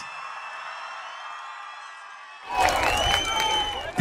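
Rally crowd cheering, faint at first, then much louder from about two and a half seconds in.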